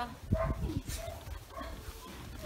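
Young dog giving several short whines and whimpers, one of them falling in pitch, with low thumps underneath.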